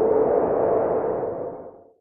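An electronic swoosh sound effect with one ringing tone at its core, swelling up and then fading away near the end.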